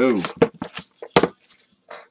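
Trading cards and their packaging handled on a table: a few short, sharp taps and clicks, the loudest a little over a second in.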